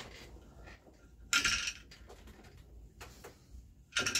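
A small shuttle being passed by hand through the warp threads of a floor loom, with a short clattering rustle about a second and a half in and another right at the end.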